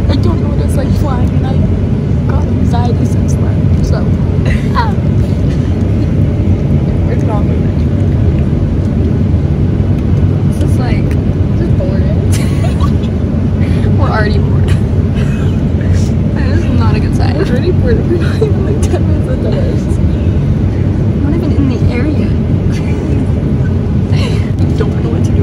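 Steady, loud low rumble of jet engines and rushing air, heard inside an airliner cabin.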